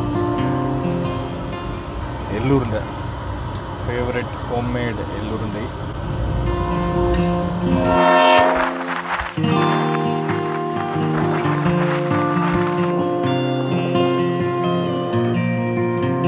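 Background music of sustained, layered notes. About eight seconds in, the bass drops away and a voice briefly comes in over the music.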